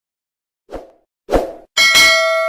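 Sound effects for subscribe-screen buttons popping onto the screen: two short pops about half a second apart, then near the end a bell-like ding that rings on.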